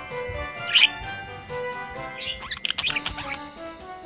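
Budgerigar chirping over background music: one loud, short chirp about a second in, then a run of quick chirps and chatter in the second half.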